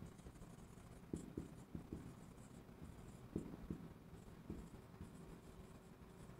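Marker pen writing on a whiteboard: faint squeaks and short taps of pen strokes, in scattered runs.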